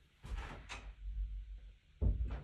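A room door being closed: a sharp click a little under a second in, then a low rumble as it shuts.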